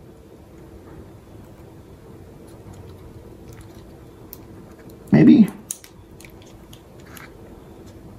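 Faint small clicks and handling noises of fingers working a disassembled iPod's plastic parts and pressing its ribbon cable into the connector, with one short vocal sound about five seconds in.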